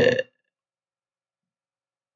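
A man's spoken word trailing off in the first quarter second, then complete silence.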